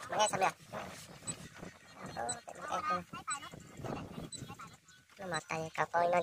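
Voices talking, in short phrases with pauses between them.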